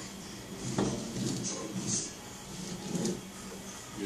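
A few light knocks and rattles as a baby pulls up on an oven door handle and a plastic ride-on toy truck.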